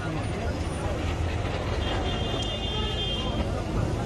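Outdoor street noise: a steady low engine rumble with faint background voices. About two seconds in, a high steady tone sounds for about a second and a half.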